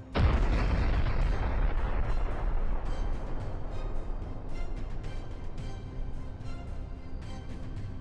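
A missile warhead explosion: one heavy blast at the very start, whose rumble fades slowly over several seconds, with background music underneath.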